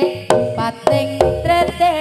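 Live jaranan gamelan music: sharp kendang drum strokes and ringing metal percussion notes in a quick, broken rhythm. A deep low note comes in a little past halfway.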